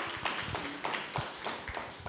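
Scattered hand clapping from a small audience: quick, irregular claps, with a brief faint voice in among them.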